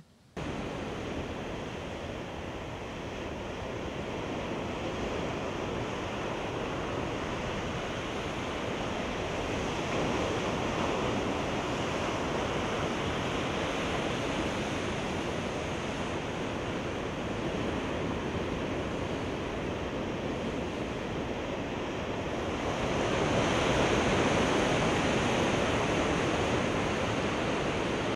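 Ocean surf breaking and washing over a rocky shore below a cliff, a steady rushing sound that swells louder near the end.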